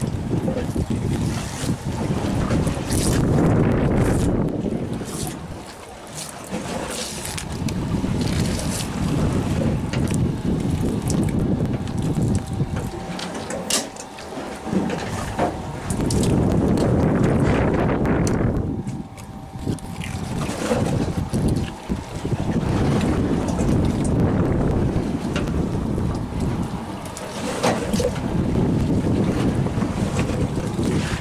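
Wind buffeting the microphone in gusts that swell and fade every few seconds, with scattered light clicks and scrapes and a faint steady hum partway through.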